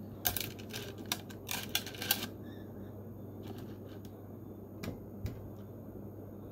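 Quick small clicks and rattles of small objects handled by hand, dense for the first two seconds, then only a few scattered clicks, over a faint low steady hum.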